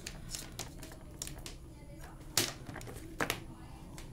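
Clicks and knocks of a plastic power strip and its cable being handled on a desk, a scattered run of short sharp sounds with the loudest about halfway through and a quick pair soon after.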